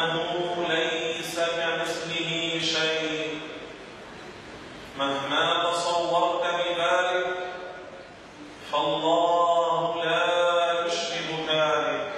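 A man's voice speaking Arabic into a microphone, in three long phrases with short pauses between them.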